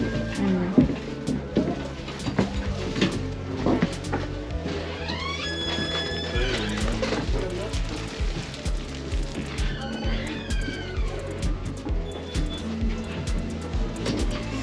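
Background music with a steady low line and a melodic phrase that comes in about five seconds in and again about ten seconds in, with a few light knocks.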